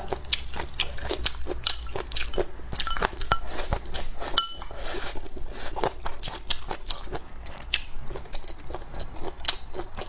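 Close-up eating sounds: a person chewing and crunching pickled chicken feet, with a steady run of small wet crackles and crunches from the mouth.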